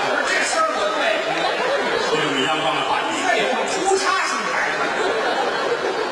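Large theatre audience laughing and chattering in a steady, continuous din, with voices talking through it.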